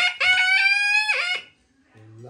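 A Nepali sahanai, a double-reed pipe with a wooden body and brass bell, played in one long held note that rises slightly in pitch, then bends downward and breaks off about a second and a half in.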